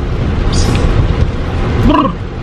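Road noise inside a moving car's cabin: a steady low rumble from engine and tyres, with a short hiss about half a second in.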